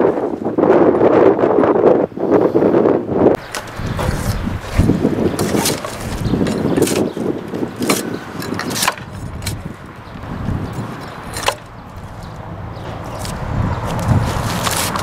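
Drawknife stripping bark from a poplar pole: irregular scraping strokes along the wood, with several sharp knocks of the blade. A loud rushing noise fills the first three seconds or so.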